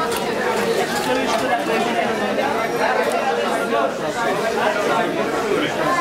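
Background chatter of many people talking at once, a steady hubbub of overlapping voices.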